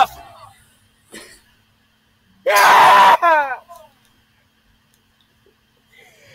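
A person's sudden loud scream about two and a half seconds in, trailing off into a short falling cry, with quiet either side.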